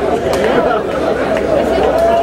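A crowd of many voices shouting and chanting together, overlapping, over a steady low hum.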